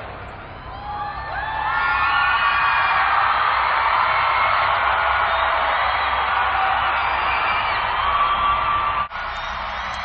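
A huge concert crowd cheering and screaming, with many high rising whoops. The noise swells about a second in and holds loud, then drops suddenly near the end.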